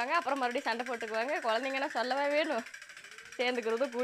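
A voice chanting a quick sing-song phrase in rapid syllables, breaking off about two-thirds of the way through and starting again just before the end.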